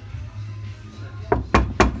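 Three sharp knocks in quick succession on the inner metal panel of a Lada Niva Urban door, over background music. The panel is bare apart from a single strip of vibration-damping material.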